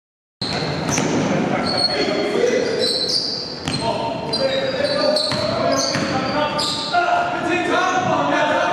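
A basketball being dribbled and bouncing on a hardwood gym floor, with players' voices, all echoing in a large gymnasium. The sound cuts in about half a second in.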